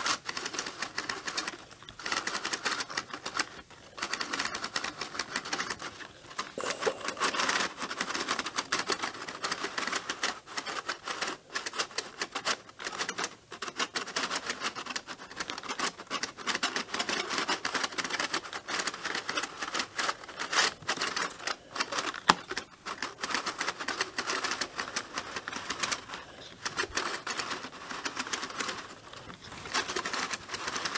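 Cardboard mutoscope being hand-cranked: its stack of picture cards flicks one after another past the stop, making a fast, continuous clatter of small card clicks. The clicking comes in spells with several short breaks where the cranking pauses.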